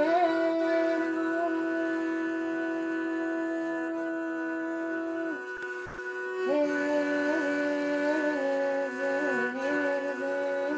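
A woman singing a slow medieval Armenian love song, a lament, over a steady drone bowed on a kamancheh. She holds one long note for about five seconds, breaks off with a small click, and about six and a half seconds in resumes with a winding, ornamented melody while the drone carries on.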